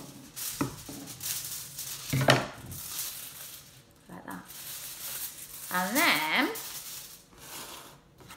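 Kitchen foil being cut in half with scissors and handled, a crackly rustle with a few sharper crackles. About six seconds in, a short voice-like call rises and falls over it.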